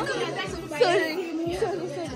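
Chatter: several people talking in a room, voices overlapping.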